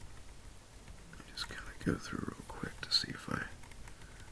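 A man muttering under his breath, too low for the words to be made out, from about a second in until near the end.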